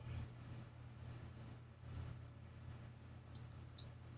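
A few faint computer mouse clicks near the end, over a low steady hum.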